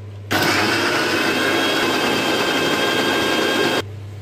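Electric mixer grinder running at full speed, grinding soaked moong dal into a fine paste. It switches on suddenly just after the start and cuts off shortly before the end.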